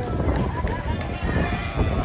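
People talking, with low rumble underneath.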